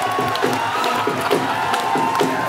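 Dhol drums played live in a quick, steady beat, with an audience cheering over the music.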